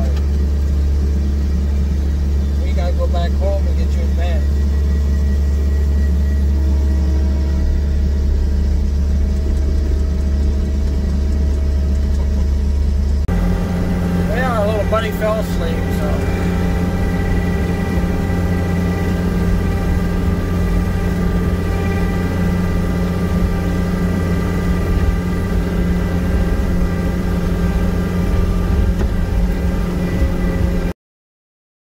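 Skid steer loader engine running steadily, heard from inside the cab as a loud low drone. About 13 seconds in the note changes abruptly to a busier engine sound while the bucket pushes snow.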